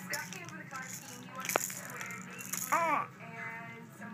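Plastic baby toy keys rattling and clicking as a baby shakes and mouths them, with a sharp click about one and a half seconds in. About three seconds in there is a short vocal squeal that rises then falls in pitch.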